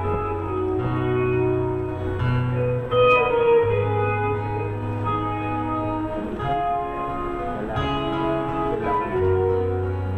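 Instrumental song introduction played on guitar over a bass line, with chords changing every second or so. There is a brief sharp knock about three seconds in.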